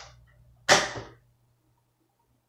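A cat hissing: a short hiss at the start, then a much louder, sharp hiss under a second in that fades quickly. It is the cat's angry reaction to spot-on flea treatment.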